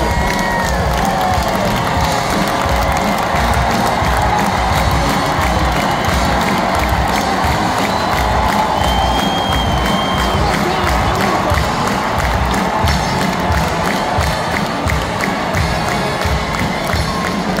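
Large arena crowd cheering and clapping without a break, with individual shouts and whoops rising above it.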